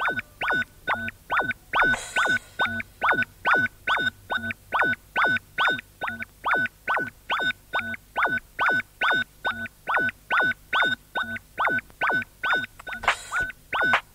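Electronic music from a DJ set: a synthesizer riff of short notes, each dropping sharply in pitch, repeating evenly about three times a second, with a few brief cymbal-like hisses.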